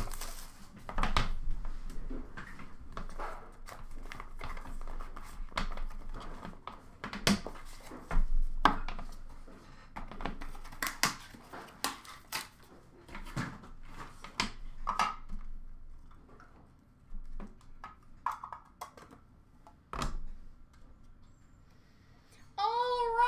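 Hands opening a cardboard box of hockey cards and handling the packs and cards inside: irregular rustles, taps and small clicks of card and cardboard, thinning out toward the end.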